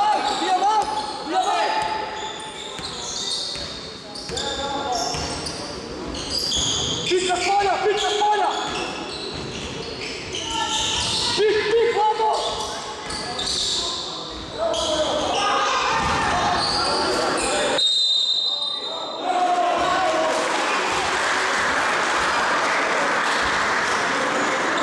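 A basketball is dribbled and bounced on a hardwood court in a large, echoing hall, with players and coaches shouting. A brief high whistle sounds near the end, followed by steady hall noise.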